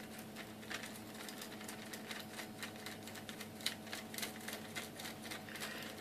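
Small 3D-printed plastic scissor lift being folded closed by hand: faint, irregular light clicks and ticks of the plastic arms and plates moving against each other, over a steady low electrical hum.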